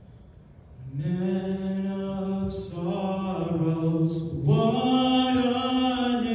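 A male solo voice starts singing about a second in, through a microphone. The notes are slow and long-held, stepping up to a higher held note about four and a half seconds in.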